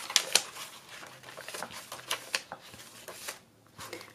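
Paper pages of a handmade junk journal being turned and handled: a rustle of paper with several small crisp ticks and flaps, which dies away near the end.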